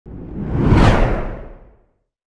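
A whoosh sound effect for a channel logo intro: one noisy sweep that swells to a peak about a second in, then fades away.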